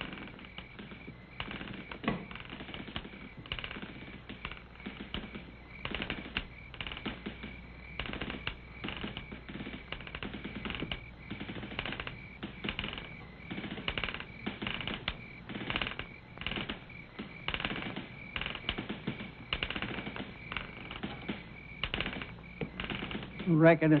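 Boots and wood knocking on wooden porch floorboards: an irregular run of clicks and knocks, a few each second, over a faint steady high whine.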